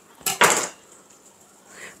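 A serrated kitchen knife clacks down onto a stone countertop about a quarter of a second in, with a short rustling clatter right after it.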